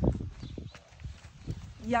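A horse's hooves plodding at a walk on dry, sandy dirt, with a person's footsteps alongside: a few irregular dull knocks.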